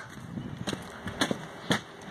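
Footsteps on soil and grass: three soft steps about half a second apart over low outdoor background noise.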